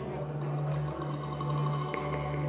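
Ambient background score: a low, sustained drone with several held tones.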